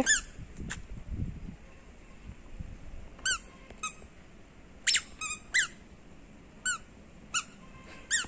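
A toddler's squeaker shoes squeaking with the child's steps: about eight short, high squeaks, each rising and falling in pitch, spaced irregularly as the child walks slowly.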